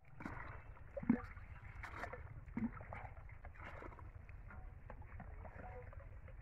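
Water (a urea fertiliser solution) being scooped with a mug from a metal pot and a plastic bucket and poured onto seedlings: sloshing and splashing over an outdoor background. A sharp knock comes about a second in, with a weaker one at about two and a half seconds.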